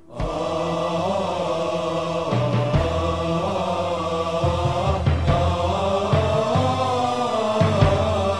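Early-1990s Turkish pop music, a passage with no lead vocal: sustained chords over a moving bass line. The music comes back in at once after a momentary dip at the very start.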